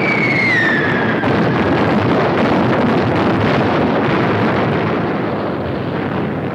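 Whistle of falling bombs gliding down in pitch and ending about a second in, followed by a continuous rumble of explosions.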